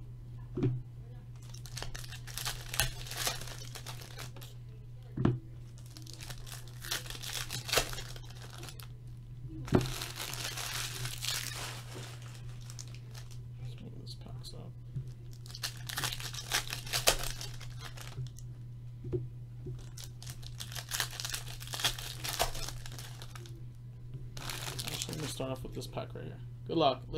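Foil trading-card pack wrappers crinkling and tearing open, with cards being shuffled and handled in irregular bursts and a few sharp knocks against the table. A steady low hum runs underneath.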